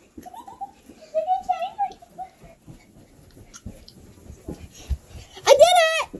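A few dull thumps of a child running in a sleeping bag across the floor, coming closer, with children's voices in the first couple of seconds and a loud child's shout near the end.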